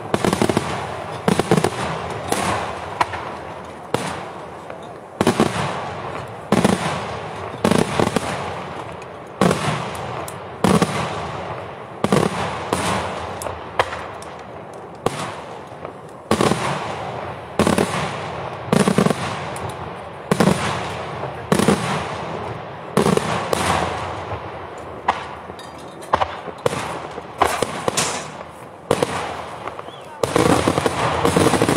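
Daytime aerial fireworks shells bursting overhead in a continuous barrage of loud bangs, roughly one to two a second, each trailing off in a rolling echo.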